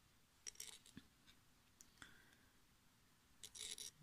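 Near silence with faint handling sounds of thread and a tatting shuttle: a few soft ticks and rustles about half a second in and again near the end.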